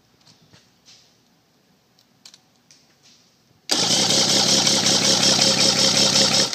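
Starter cranking a Mercury 150 XR6 two-stroke V6 outboard for a compression test, beginning about three and a half seconds in and running on past the end with an even, rapid pulsing. The cylinder under test reads 140 psi, level with the others: even compression.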